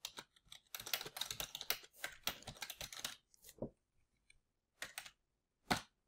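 Computer keyboard typing: a quick run of keystrokes for about three seconds, then a few single clicks.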